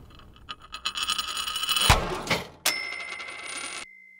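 eHow's audio logo sting: a building flurry of bright, jingling chimes, a sharp hit about two seconds in and a second hit shortly after, then a single high ringing tone that fades out.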